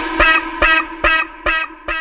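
Breakdown in a jungle dutch DJ remix: the drums drop out, leaving short pitched synth stabs about twice a second over a held low note.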